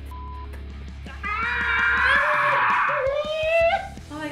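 A short steady beep, like a censor bleep, then a long, loud raspy yell whose pitch rises near the end: a pained reaction to the burn of the hottest hot sauce.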